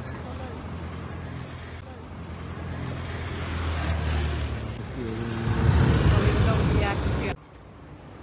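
City street traffic: a vehicle engine drones and grows louder, then a loud low rumble as traffic passes close, with voices mixed in. The sound cuts off abruptly about seven seconds in.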